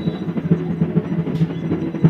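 Rapid, continuous drumming, loud and dense with many quick strokes.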